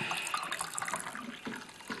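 Tea being poured from a small teapot into little porcelain cups on a bamboo tea tray: a steady trickle of liquid with many small splashes.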